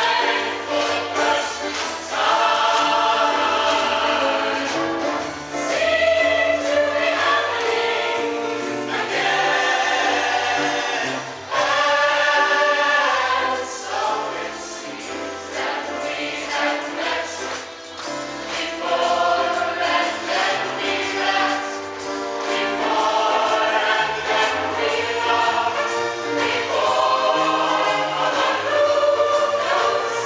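Mixed show choir singing a song in harmony with sustained chords, backed by a live band with a steady beat.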